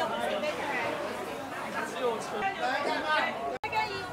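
Chatter of several people talking at market stalls, overlapping voices with no single clear speaker. The sound breaks off briefly near the end at an edit.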